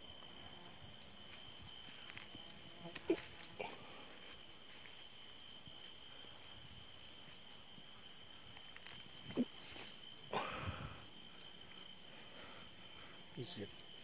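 Night insects calling steadily: a continuous high cricket trill with a fast, even pulsing higher above it. A few short knocks and rustles break in, the sharpest about three seconds in and again about nine seconds in.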